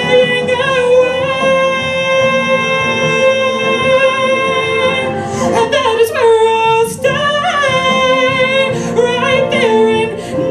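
A woman singing live into a microphone: she holds one long note for about five seconds, then sings a run of shorter notes that slide up and down.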